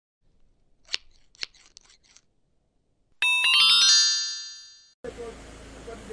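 A TV news channel's logo sting. A few short ticks come first, then about three seconds in a bright chiming chord strikes and rings out, fading over about two seconds. Near the end it gives way to a steady background hiss.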